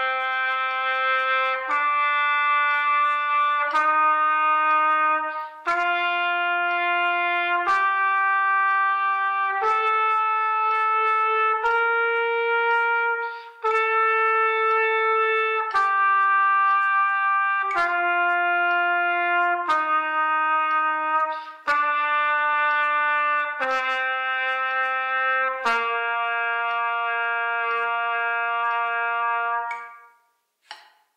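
Solo B-flat trumpet playing slow, even long notes of the C scale, about one note every two seconds. It climbs step by step to the top C, holds it, then steps back down and ends on a long held low C.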